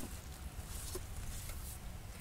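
Faint background: a low steady hum with light hiss and no distinct event.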